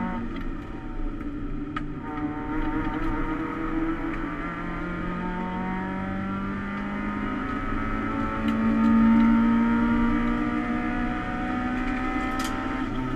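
Toyota Starlet EP91 race car's 1.3-litre 4E-FE four-cylinder engine, heard from inside the stripped, roll-caged cabin, accelerating in gear. After a short dip about a second in, its pitch rises slowly and steadily, loudest about three-quarters of the way through.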